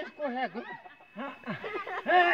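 Quiet human voices: low murmured talk mixed with snickering laughter.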